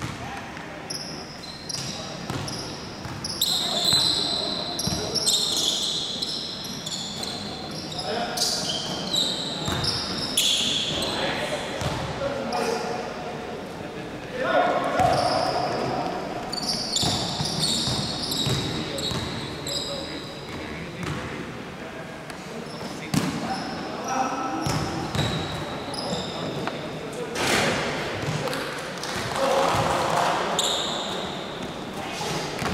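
Indoor basketball game: a ball bouncing on a hardwood court, sneakers squeaking in short high chirps, and players' indistinct shouts, all echoing in a large gym hall.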